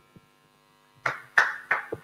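Steady low electrical hum from the sound system, joined in the second half by a few short knocks and rustling noises.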